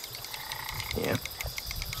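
Frogs and insects calling in a steady chorus of high, held notes with fast ticking, over a low rumble that builds partway through; a voice says "yeah" about a second in.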